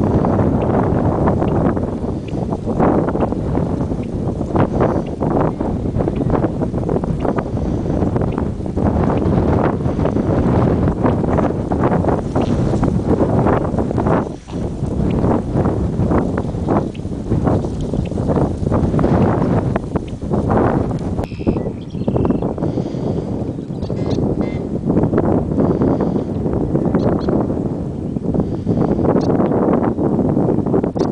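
Wind buffeting the microphone in strong, uneven gusts, loud and low-pitched throughout.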